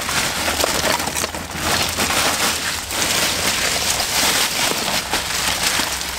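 Ice cubes pouring from a bag into a soft-sided cooler: a steady, dense clatter of cubes tumbling onto ice.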